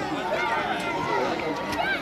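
Several people's voices calling and talking at once, overlapping and indistinct, with no clear words.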